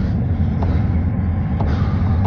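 A loud, steady low rumble with a few light clicks through it.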